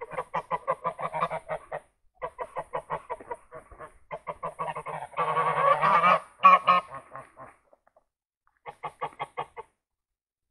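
Domestic geese honking in rapid runs of short calls, several a second. A longer, louder call comes in the middle, and after a pause of about a second near the end another run of honks follows.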